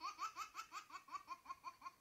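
High-pitched laughing from a plush mimicking piglet toy's speaker: quick, evenly spaced 'ha-ha' pulses, about six a second, each rising slightly in pitch and slowly fading.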